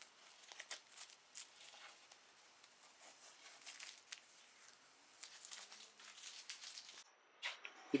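Blue painter's masking tape being peeled off oak plywood around a freshly cut hole, making faint, scattered crackles and crinkles.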